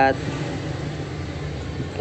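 Steady low hum of a running machine, even and unchanging, with the tail of a spoken word at the very start.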